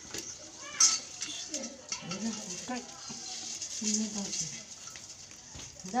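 Voices talking in the background with no clear words, and a brief loud, high sound about a second in.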